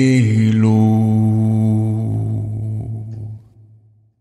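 The closing note of a song: a low voice holds one long chant-like note that drops slightly in pitch near the start and fades out over about three and a half seconds.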